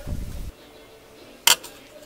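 A low rumble that cuts off about half a second in, then a single sharp click about a second later: a screwdriver tip tapping against metal while new rubber weatherstrip is pressed into the car's window channel.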